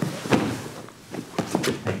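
Bodies thudding and scuffing on a vinyl-covered grappling mat as one grappler bumps and rolls the other over, with a few sharp knocks among the shuffling.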